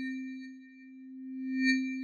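A synthesized sustained tone used as a transition sound effect: one steady low note with a thin high ring above it. It fades down about two-thirds of a second in and swells back up near the end.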